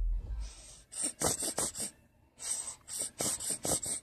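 A plastic condiment squeeze bottle being squeezed, sputtering out air and sauce in quick hissing squirts: a short run about a second in, then a longer run near the end. The bottle is not dispensing smoothly. A low rumble from handling comes at the very start.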